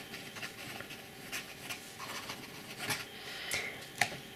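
Steel nib of a Jinhao 992 fountain pen scratching faintly across Rhodia paper in quick handwriting strokes.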